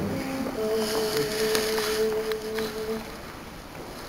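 Male voices softly humming held starting pitches, a few notes together like a chord, as the ensemble takes its pitch before an a cappella hymn; they fade after about three seconds, with a few light clicks and rustles.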